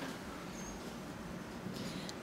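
Low room tone: a steady faint hiss with no speech, and one brief faint high squeak a little over half a second in.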